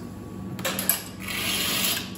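A couple of clicks, then from just past a second in a steady hiss of water running from the espresso machine to rinse the shot glass.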